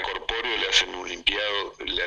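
Speech only: a man talking over a telephone line.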